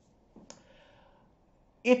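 A single short mouth click about half a second in, followed by a faint intake of breath, as the narrator gets ready to speak again.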